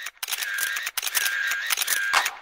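Camera taking photos in quick succession, about three shots in two seconds. Each shot is a shutter click with a short, high, steady whine.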